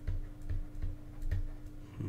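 Light taps and clicks of a stylus on a drawing tablet during handwriting, a few irregular knocks each second, over a faint steady electrical hum.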